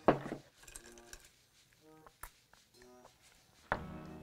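Small glass-and-ice clinks from a cocktail glass being handled and sipped, against a mostly quiet room: a sharp clink at the start and another a couple of seconds in. Music comes in abruptly near the end.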